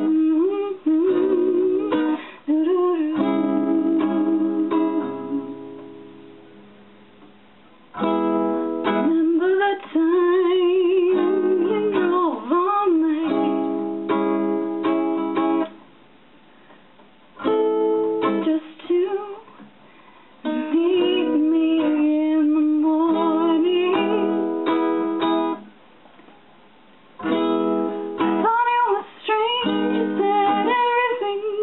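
A woman singing in a soprano voice while accompanying herself on acoustic guitar. Between some lines a chord rings out and fades before she sings and plays again.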